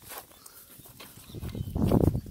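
A long-handled digging bar with a metal blade being driven into hard, dry ground to dig a fence-post hole: a few light scrapes and knocks, then a heavier thud near the end.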